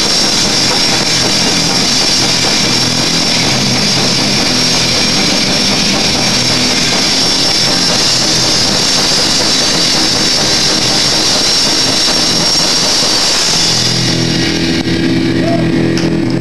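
Live punk rock band playing a loud, dense passage: distorted electric guitars and cymbals merge into a steady wash of noise with no clear notes. Clearer guitar notes come back through about two seconds before the end.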